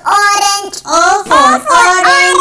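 A young child's high voice singing a short chanted phrase of several syllables.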